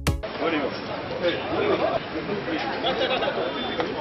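Electronic jingle music cuts off right at the start, then indistinct chatter of several overlapping voices on a dull, low-quality recording.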